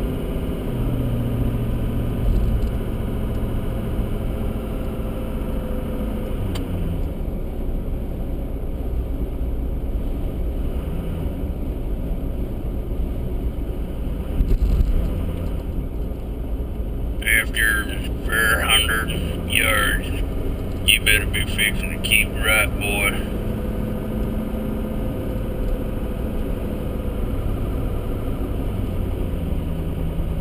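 A car's engine and tyre noise heard from inside the cabin while driving: a steady low rumble, with the engine note shifting down about six seconds in. A short run of high, chirping, voice-like sounds comes about two-thirds of the way through.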